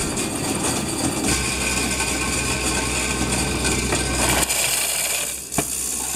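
Coins clattering through a self-service coin-counting machine as it sorts and counts them, over a motor hum. The machine stops about four and a half seconds in as the coins run low, and a single sharp click follows about a second later.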